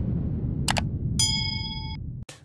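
Intro-animation sound effects over a low rumble: a short click about two-thirds of a second in, then a bright bell ding that rings on steadily, the cue for the subscribe button and notification bell.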